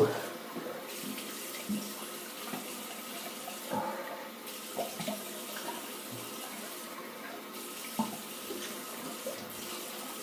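A bathroom tap running cold water steadily into a sink, with a few small splashes as the face is rinsed after shaving.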